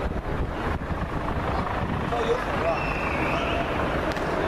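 Outdoor street ambience: a steady low rumble of traffic and wind on the microphone, with faint snatches of voices.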